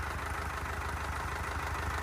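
Isuzu 4KH1 four-cylinder diesel engine idling steadily on a test stand, running smoothly, like a passenger car's engine.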